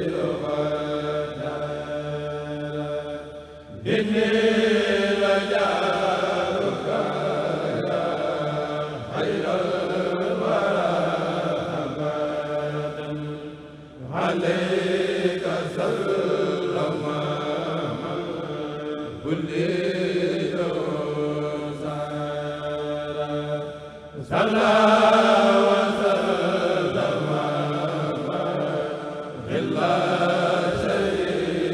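A Mouride kurel choir chanting qasidas (Khassaids) in unison through microphones, in long sung phrases of about ten seconds, each followed by a brief pause for breath.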